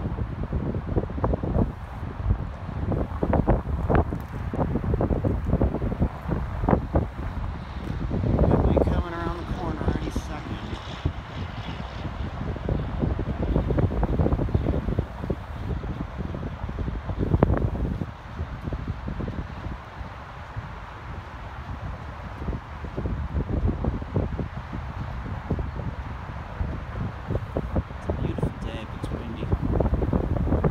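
Wind buffeting the microphone in uneven gusts, strongest about nine and seventeen seconds in.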